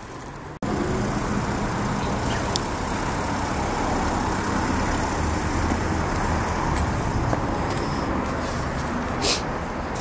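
Steady city street traffic noise from cars on the road, coming in abruptly about half a second in. A brief sharp noise stands out near the end.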